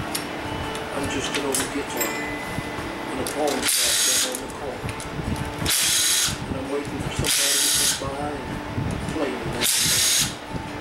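Cordless 20-volt power driver backing out differential cover bolts, in four short runs of about half a second each, spaced a couple of seconds apart.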